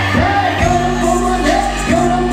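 Loud live hip-hop performance: a sustained bass line and DJ backing track, with a performer's voice through a microphone over it.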